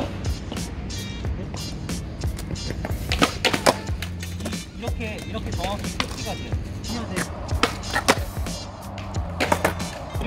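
Skateboard tail snapped against concrete pavement and the board clattering back onto its wheels: sharp clacks, a cluster about three to four seconds in and two more near the end. The board is popped on its tail and caught with the front foot, as in an ollie. Background music runs underneath.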